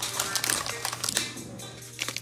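Light rustling and clicking of a wrapped trading-card pack and a cardboard box as the pack is taken out of a Donruss Soccer hobby box, with faint background music underneath.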